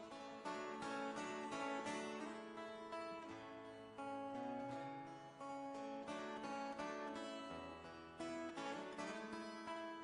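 Acoustic guitar playing an instrumental passage, a steady run of picked notes ringing one after another, with a lower held note coming in twice underneath.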